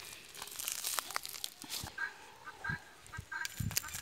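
Faint, short bird calls a few times, with scattered rustling and a couple of low thumps near the end.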